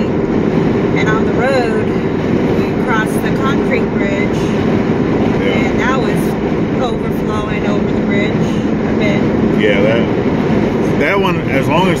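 Steady road and engine drone inside a moving Jeep's cabin, with a constant low hum, while people talk over it.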